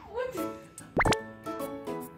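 Light, playful background music of short plucked notes, with a quick upward-sliding pop sound effect about a second in.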